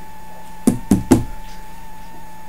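Three quick, sharp knocks about a quarter of a second apart, starting just over half a second in, over a faint steady electrical hum.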